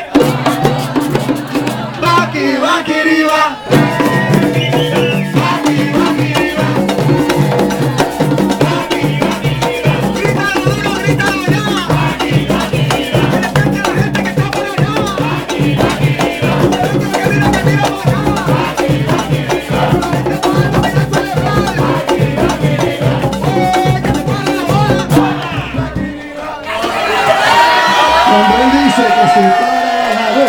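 Live Latin music: hand-held frame drums beating a fast, steady rhythm under group singing into microphones, with the crowd joining in. Near the end the drumming drops away for a moment and voices carry on.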